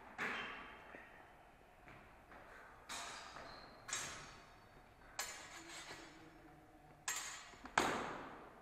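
Steel longsword blades clashing in sparring: about six sharp clanks spread out, some ringing on briefly, echoing in a large hall.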